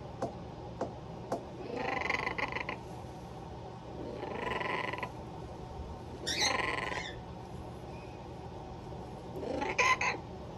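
Pet parrots making four short raspy calls a couple of seconds apart, after a few sharp clicks at the start.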